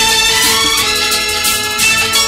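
Instrumental interlude of a 1982 Malayalam film song: held melody notes with a steady, regular rhythm underneath and no singing.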